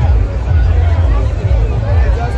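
Dense street crowd talking, a steady babble of many overlapping voices, with a heavy low rumble underneath.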